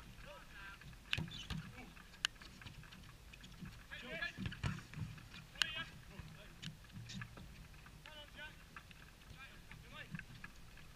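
Footballers' distant shouts and calls across the pitch, with a few sharp knocks of the ball being struck, over a steady low wind rumble on the action-camera microphone.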